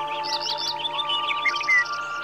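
A small songbird chirping a quick run of short high notes, with one louder sliding note near the end, over soft ambient music with long held tones.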